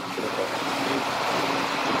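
A steady rushing noise that builds slightly, then cuts off suddenly.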